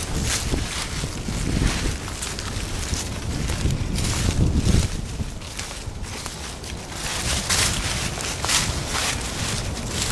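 Wind buffeting the handheld camera's microphone, with repeated rustles and scuffs from clothing and footsteps as the camera moves with people walking.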